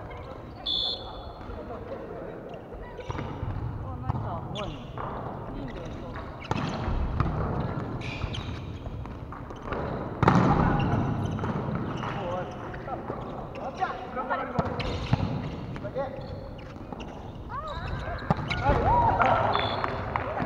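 Indoor volleyball rally: the ball is struck by hands and forearms several times, with the loudest hit about ten seconds in, while players call out to each other in a large, echoing sports hall.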